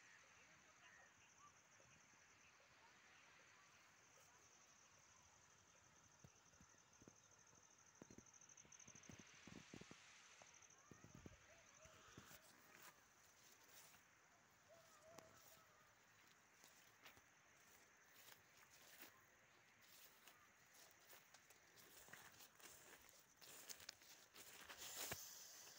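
Near silence: faint outdoor room tone with a faint, high, steady trill for about the first ten seconds, then scattered faint clicks and rustles.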